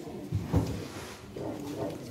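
Quiet hall sound with faint murmuring voices and two short low thumps about half a second in.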